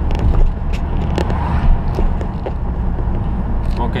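Cabin drone of a 2012 Volkswagen Jetta's 2.0-litre turbodiesel and road noise while cruising steadily in 4th gear on its DSG gearbox, with a few short sharp clicks in the middle.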